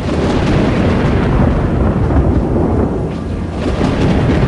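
Loud, steady, rumbling noise with no distinct events.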